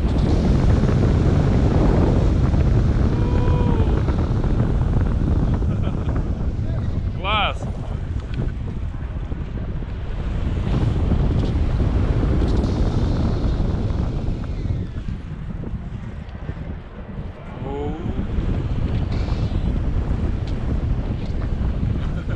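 Rushing airflow of a paraglider in flight buffeting the camera microphone, a loud, deep, rumbling wind noise that rises and falls, easing briefly about sixteen seconds in. A few short pitched sounds that rise and fall cut through it now and then.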